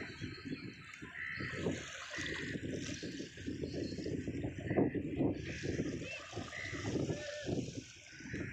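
Shallow water sloshing and splashing irregularly around a person wading with a fishing net. Faint short high chirps come and go.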